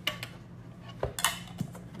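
A glass jar candle and its lid being handled: a few short clinks and taps, with a cluster about a second in.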